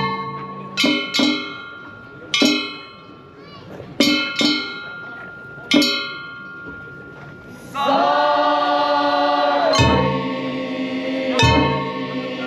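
Festival accompaniment with a metal bell or gong struck about six times, each stroke ringing on. Near the end a long held note wavers slightly for about two seconds, followed by more strokes.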